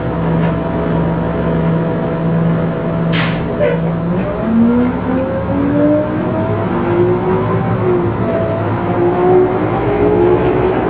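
Bus engine sound effect for a cartoon bus, running as a steady drone, with a short screech about three seconds in. From about four and a half seconds it gives way to a run of rising, sliding tones.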